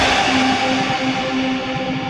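Instrumental rock music without vocals: a guitar repeats a short figure of quick notes over a quieter backing.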